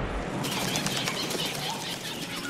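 Birds' wings flapping in a fast flutter that starts about half a second in, while a deep rumble dies away at the start.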